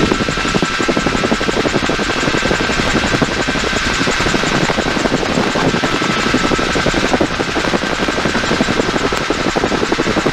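Inside the cabin of a 1952 Bell 47G (H-13 Sioux) helicopter in flight: the piston engine runs steadily under the rapid, even beat of the two-blade main rotor, during a banking descent onto the approach.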